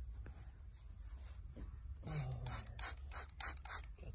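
Hand trigger spray bottle squirting water onto hair to wet it for the cut, about six quick sprays in a row in the second half.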